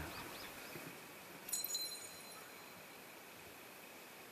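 Quiet outdoor ambience with a faint, steady high tone. About a second and a half in comes a short, bright ringing clink that dies away within about half a second.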